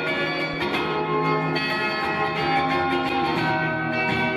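Acoustic guitar played solo, chiming chords left ringing with long sustain, with a fresh strum just after the start and another about a second and a half in. No singing.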